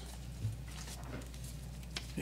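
Quiet meeting-room tone with a steady low electrical hum, one soft thump about half a second in, and faint handling of paper.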